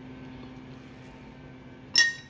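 Quiet room with a steady low hum while coffee is sipped through a straw, ending in a single sharp clink with a brief ring.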